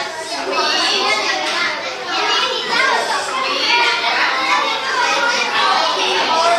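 Many children talking at once: steady, overlapping chatter with no single voice standing out.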